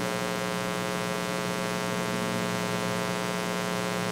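Steady electrical mains hum with a buzzy stack of overtones and a faint hiss, unchanging throughout, picked up through the pulpit microphone's sound system.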